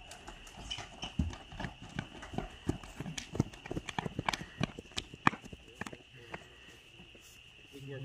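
Quick, irregular footsteps of people running on a concrete walkway; the steps thin out and stop about six seconds in. Under them runs a steady, high-pitched drone of night insects.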